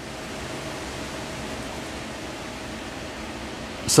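Steady background hiss with a faint steady hum running under it, with no clicks or beeps.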